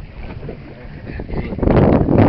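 Wind buffeting the microphone over open water from a boat. It drops away just after the start and comes back loud near the end.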